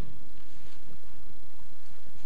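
A steady low rumble, strongest in the deepest bass, with no speech over it.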